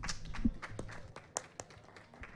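Light, scattered hand clapping: irregular sharp claps, several a second, fading out toward the end.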